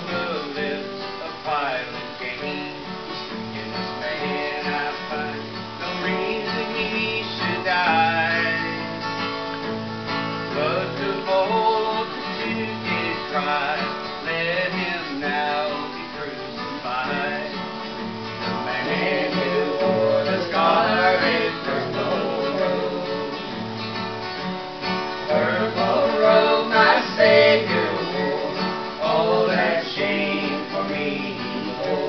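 Acoustic guitar strummed as the accompaniment to a gospel song.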